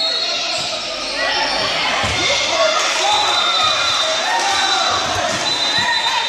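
A basketball dribbled on a gym floor, a string of short dull bounces, under shouting and chatter from players and spectators in a large indoor hall.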